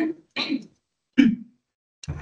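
A person clearing their throat in three short bursts with brief pauses between them.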